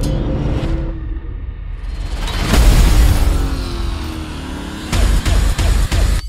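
Dramatic trailer music with held tones and a deep boom swelling about two and a half seconds in, then a quick run of hard hits near the end.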